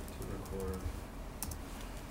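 Computer keyboard being typed on as a figure is entered into a spreadsheet: a quick run of key clicks near the start and a couple more about one and a half seconds in.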